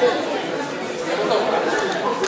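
Indistinct chatter and calls from several people's voices in a hall, with no clear words.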